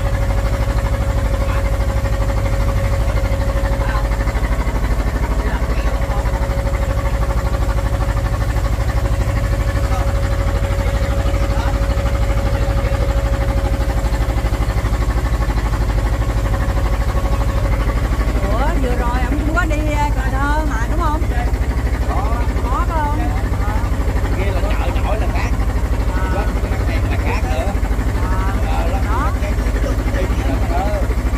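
A small wooden boat's engine running steadily under way, a constant low drone with a held tone over it that fades out a little past halfway. From then on, people's voices chatter over the engine.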